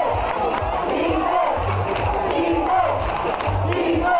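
Rugby crowd shouting and cheering over background music with a steady thumping beat.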